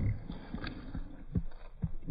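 French bulldog mouthing and licking at a cheese puff close to the microphone: a few soft, low thumps and faint clicks, spaced irregularly.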